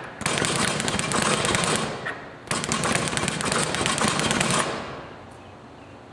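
Teardrop speed bag punched in a fast rolling rhythm, rattling off its rebound board. It comes in two runs of about two seconds each, with a short break between.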